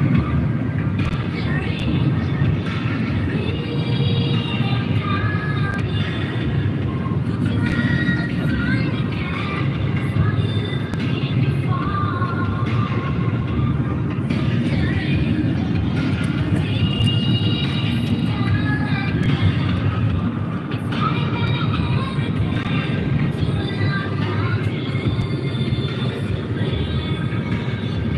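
Steady road and engine noise inside a moving car's cabin, with music playing over it throughout.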